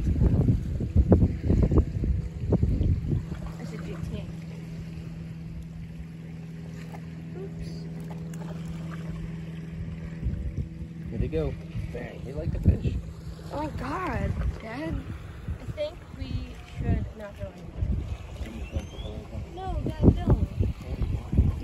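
Wind rumbling on the microphone, with a steady low motor hum through the middle and indistinct voices at the start and again about two-thirds of the way through.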